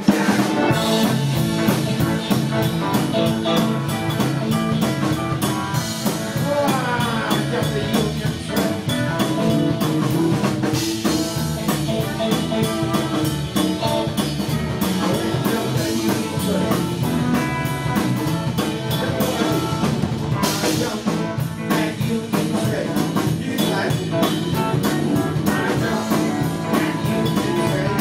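Live blues band playing an instrumental passage: drum kit, electric bass, electric guitar, organ and pedal steel guitar, with steady drumming and sliding steel-guitar notes.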